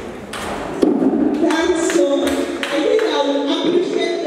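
People's voices in a large hall, getting louder about a second in, with a few light knocks.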